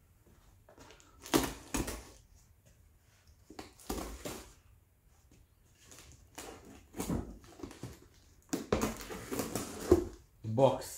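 Packing tape on a cardboard shipping box being slit with a knife and the cardboard flaps scraped and pulled open, in several short scratchy bouts, the longest near the end.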